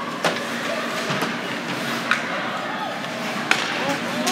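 Ice hockey play: four sharp clacks of sticks and puck on the ice, about a second apart, over steady arena background noise and spectators' chatter.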